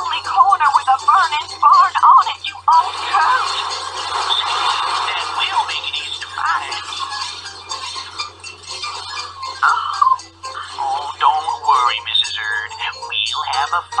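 Recorded skit audio of voices mixed with music, with a steady low hum underneath; no clear words come through.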